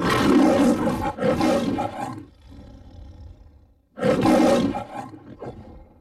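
Lion roaring in the Metro-Goldwyn-Mayer logo: loud roaring for about two seconds, a quieter growl, then a second loud roar about four seconds in that dies away near the end.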